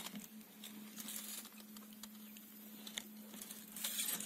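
Faint scratching and rubbing of fingers working a wooden plug into the glued truss-rod access hole in a Fender Stratocaster headstock, louder near the end, over a low steady hum.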